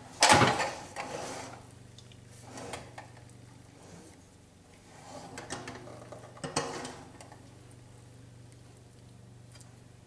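Metal roasting pan clattering and scraping on a tile countertop as it is shifted and turned, with a silicone spatula working against the pan. There is a loud clatter right at the start, then softer scrapes and a sharp knock about six and a half seconds in.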